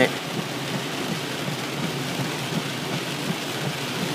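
Heavy rain falling steadily on a car's roof and windshield, heard from inside the car.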